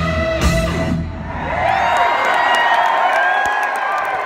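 Live rock band with electric guitars, bass and drums, recorded from the audience, playing the end of a song. About a second in the bass and drums stop, leaving sliding, pitch-bending high tones over rising crowd noise as the song ends.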